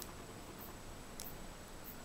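Quiet room tone with a single faint click about a second in, from flat needle-nose pliers working thin copper wire.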